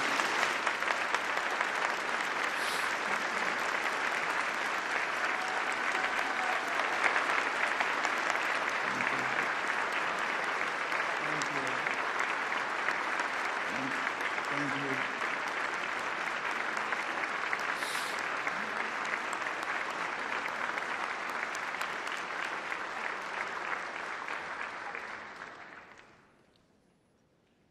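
A large audience applauding, sustained and even, with a few voices faintly heard amid the clapping; the applause stops just before the end.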